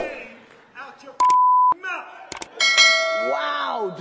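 A censor bleep, a single steady pure tone lasting about half a second, cuts into a man's speech about a second in, blanking out a swear word. After the halfway point a notification-style chime of several steady ringing tones starts and runs on under the speech.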